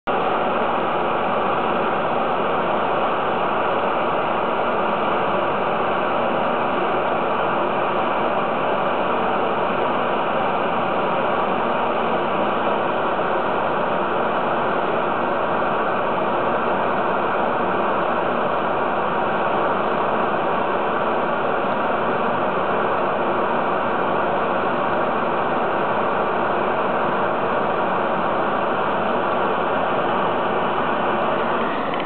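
SCD-30 CO2 laser engraving machine running while it engraves card: a steady, even noise with faint steady tones in it, unchanged in level throughout.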